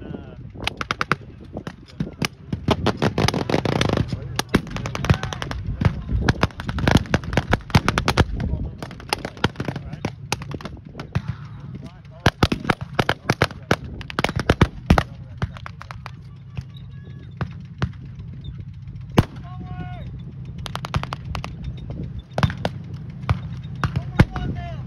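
Reenactment blank gunfire: rapid, overlapping rifle and machine-gun shots, heaviest in the first two-thirds and thinning to scattered shots near the end. Beneath it the steady running of the tanks' engines.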